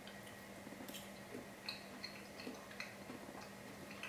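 Faint chewing of a mouthful of soft steamed carrot: small, scattered wet clicks of the mouth, over a low steady hum.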